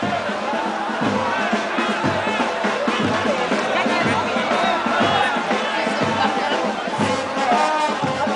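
A crowd singing and cheering over music with a steady low beat, about one thump a second.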